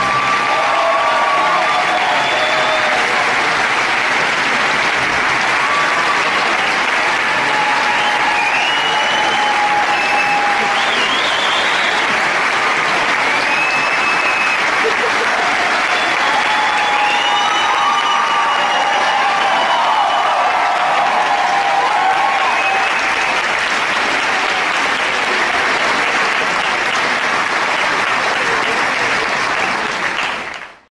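A large theatre audience applauding steadily throughout, with scattered cheers and whoops rising above the clapping.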